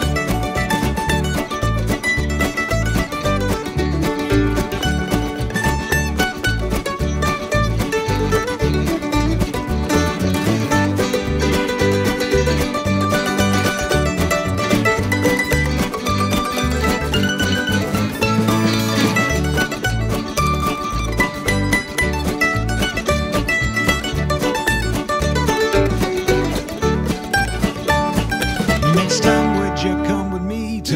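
Instrumental break in an acoustic country song: plucked string instruments playing a melody over a steady bass beat, with no singing.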